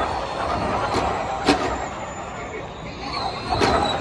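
Gen3 Formula E electric race cars passing through a corner, a high electric-motor whine rising and fading as they go by, over spectators' chatter. A sharp click about a second and a half in.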